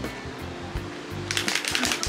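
Background music plays steadily, and near the end a quick run of small clicks lasting about half a second comes from a plastic makeup base tube being handled in the hands.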